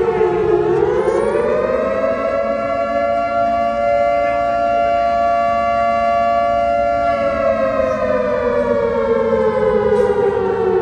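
A siren wailing: its pitch rises over the first two seconds, holds steady, then slowly falls from about seven seconds in.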